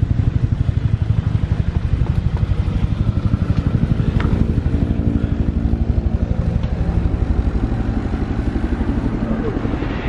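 A small engine running steadily close by, with a fast, even pulse.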